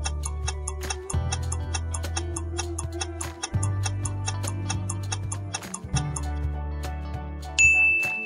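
Quiz countdown-timer music: fast, even clock-like ticking over a looping bass line. Near the end a bright chime rings out as the correct answer is revealed.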